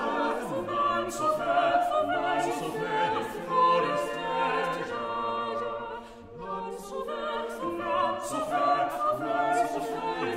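A small unaccompanied vocal ensemble singing an English Renaissance madrigal, several voice parts interweaving, with a brief drop between phrases about six seconds in.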